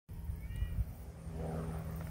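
A cat meowing faintly once, rising and falling, about one and a half seconds in, over a steady low rumble.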